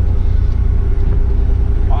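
Kenworth dump truck's diesel engine running, a steady low drone heard inside the cab with a steady hum above it.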